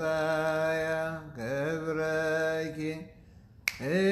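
A man chanting solo in a liturgical style, holding long notes with slow bends in pitch and breaking briefly about a third of the way in. Near the end the voice stops for about half a second, then a single sharp click comes just before the chant resumes.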